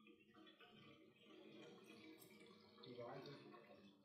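Faint splashing and dripping of water in a basin, with faint voices in the room.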